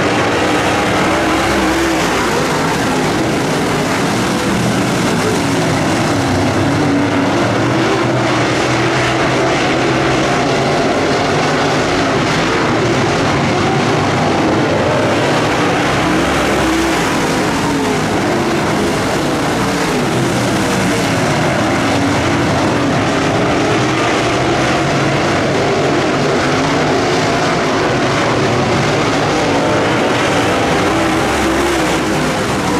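A pack of dirt late model race cars running at racing speed, their V8 engines loud and continuous, the overlapping engine pitches wavering up and down as the cars work through the turns.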